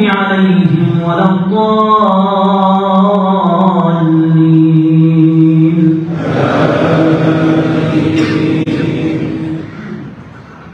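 An imam's voice chanting Arabic recitation into a microphone over the mosque's loudspeakers, in long, drawn-out melodic notes. About six seconds in, the voice gives way to a noisier rush with one steady tone held beneath it, and this fades just before the end.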